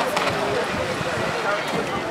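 Many voices talking and calling out at once.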